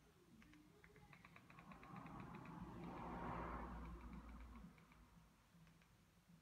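Faint, quick clicks of a TV remote's buttons being pressed to move across an on-screen keyboard, clustered about one to two seconds in. Under them, a soft swell of low background noise rises and peaks about three seconds in, then fades.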